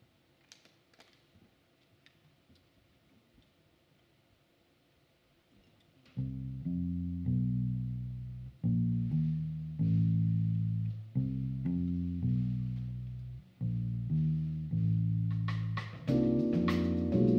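Near silence with a few faint taps, then about six seconds in an electric bass guitar starts a solo riff: a repeating phrase of plucked low notes, each one fading. Drum hits come in just before the end.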